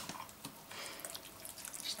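Faint, wet clicks and squishes of bare hands rubbing olive oil over raw quail carcasses.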